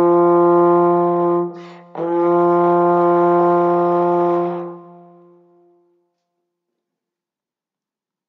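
Trombone holding a long note on one pitch, then a quick breath about a second and a half in, then the same note held again for about two and a half seconds before it fades out: two whole notes with a breath between them.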